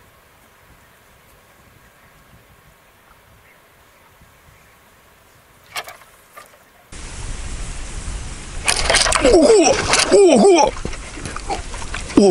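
A short splash as a carp takes the bait and pulls the float under, about six seconds in. Then a steady low rumble of wind and handling noise, with a man's excited cries from about nine seconds as he plays the hooked carp on the rod.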